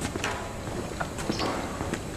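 Footsteps on a hard paved street: irregular sharp clicks and knocks, several a second, over a steady low rumble.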